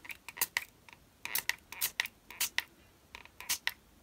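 A small fine-mist spray bottle pumped in a series of quick spritzes, about a dozen, many in pairs, wetting Brusho crystal powder on card so the colours dissolve and spread.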